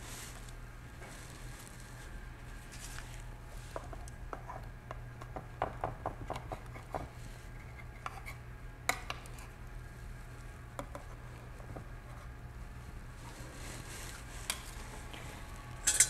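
Scattered light clicks, taps and scrapes of a knife against a baking dish as a puff pastry pie lid is trimmed, busiest about five to seven seconds in, over a steady low hum. A louder knock comes near the end.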